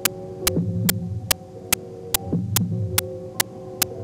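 Suspense underscore: a sharp, clock-like tick about two and a half times a second over a low, heartbeat-like throb and a few held tones. The held tones drop out briefly just past the middle.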